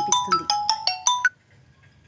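An electronic ringtone melody: a quick run of short beeps at stepping pitches, overlapping the end of a woman's speech and stopping suddenly about a second and a half in.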